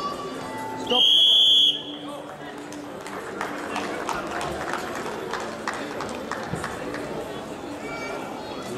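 Electronic match horn sounding once, a steady high tone of under a second about a second in, signalling the end of the bout as the clock reaches zero. After it comes arena crowd noise with scattered shouting voices.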